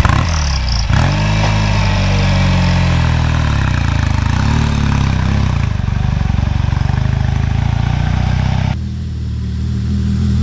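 Trials motorcycle engine revving hard as the bike is pushed and ridden up a climb, its pitch rising and falling with the throttle. Near the end the sound cuts suddenly to a quieter engine running.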